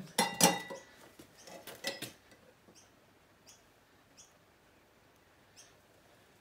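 Stainless steel propeller set down on another propeller with a ringing metallic clink, followed by a few lighter metal clicks about a second and a half in as a sliding bevel gauge is brought against the blade. After that it is quiet but for a faint high chirp repeating regularly.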